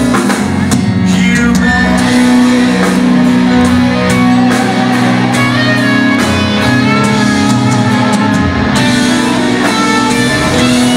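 Live rock band playing: electric guitars over drums and bass, with held notes and chords throughout.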